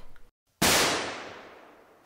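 A dramatic sound-effect hit: after a moment of dead silence, a sudden loud burst of noise that fades away over about a second.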